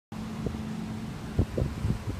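A steady low hum outdoors, with wind buffeting the phone's microphone in a few short low gusts in the second half.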